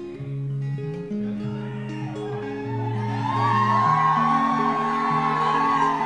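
Song intro on acoustic guitar, picking a steady pattern of notes, joined about three seconds in by a louder, higher held melody line that wavers slightly in pitch.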